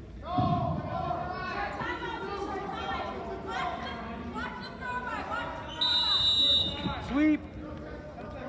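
Several voices calling and shouting over one another. About six seconds in, a high, steady tone sounds for about a second, followed by a brief loud shout.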